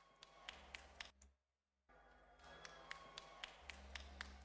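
Near silence broken by a few faint, sharp clicks, with a short dead gap about a second and a half in.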